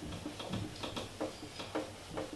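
Handheld eraser scrubbing across a whiteboard in quick back-and-forth strokes, a rapid irregular series of short rubbing sounds, about three or four a second.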